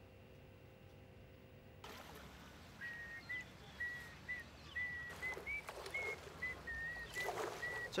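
About three seconds in, a person starts whistling a slow string of short, steady high notes, like a simple tune. Under it is a soft outdoor hiss of wind and water, which starts about two seconds in after near-quiet room tone.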